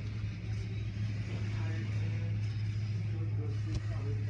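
Automatic tunnel car wash running, heard through the glass of a viewing window: a steady low machinery hum under the noise of spinning cloth brushes and water spray working over a car.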